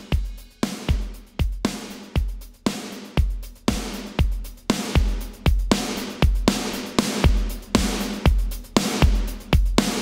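A mixed drum kit playing a steady beat, kick and snare with cymbals, about two hits a second. A heavily squashed, parallel-compressed copy of the drums is faded in gradually under the original, so the gaps between hits fill in and the kit sounds fuller and more glued together.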